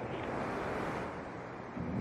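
Steady hiss of shortwave radio static from a TECSUN S-2000 receiver tuned to 15565 kHz, with no treble above the receiver's narrow audio band.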